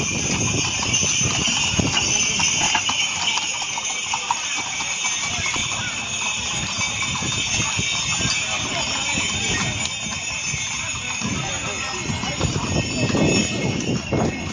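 Hooves of several walking horses clopping on a stone-paved street, with voices of people around them.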